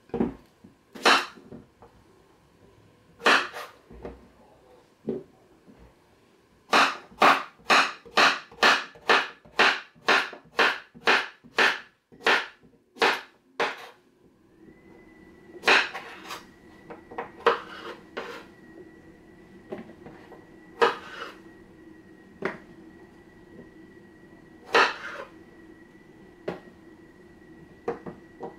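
A kitchen knife slicing through zucchini into rounds, each cut ending in a sharp knock of the blade on the cutting surface. There are a couple of single cuts, then a quick even run of about three cuts a second, then slower single cuts. About halfway through, a steady high whine with a low hum comes in and keeps going.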